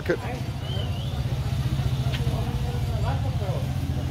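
Steady low rumble of an idling vehicle engine close by, with faint voices of passers-by and a short high chirp about a second and a half in.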